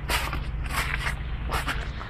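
Rustling and scuffing of a handheld phone camera being moved about, over a steady low car-engine hum.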